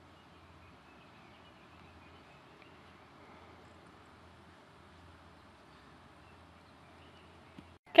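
Faint, steady outdoor background hiss with no distinct source, ending in a loud spoken 'okay' right at the close.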